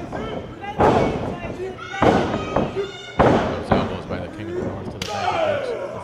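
Impacts in a pro wrestling ring: three heavy thuds about a second apart, with men's shouting voices between them.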